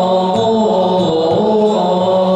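Buddhist liturgical chant sung in unison by a group, in long held notes that slide between pitches, accompanied by a large barrel drum struck with wooden sticks.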